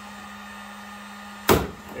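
Hand pop-rivet gun being squeezed to set a rivet: the mandrel snaps off with one sharp, loud crack about one and a half seconds in, the sign that the rivet has clamped down. A faint steady hum runs underneath.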